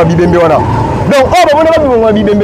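A man speaking animatedly in conversation: continuous talk with rising and falling pitch.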